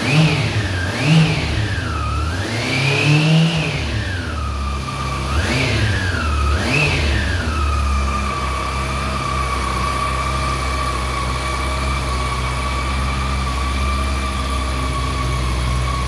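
Honda CB400 Super Four Hyper VTEC's inline-four engine howling through quick throttle blips, five rises and falls in pitch over the first seven seconds with one held a little longer, then settling to a steady idle.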